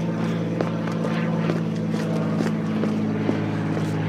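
A vehicle engine running steadily at idle, a constant low hum, with a few faint knocks from handling.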